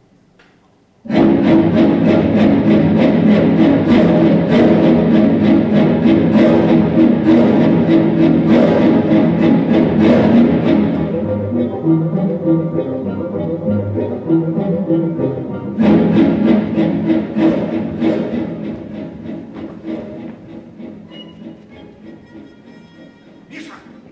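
Orchestral music with bowed strings cuts in suddenly about a second in, loud and driven by dense rhythmic accents. It thins out about halfway, surges back near the three-quarter mark, then fades away toward the end.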